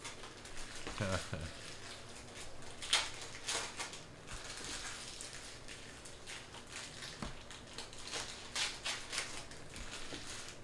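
Chrome soccer trading cards being flicked and slid through by hand from a freshly opened stack: soft papery swishes and ticks at irregular intervals, the sharpest about three seconds in and again near the end. A brief low voice sound about a second in.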